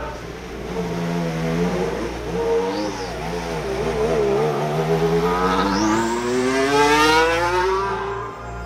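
Formula One car's 1.6-litre turbocharged V6 hybrid engine running at low revs with a wavering pitch, then accelerating with a steadily rising note that is loudest near the end.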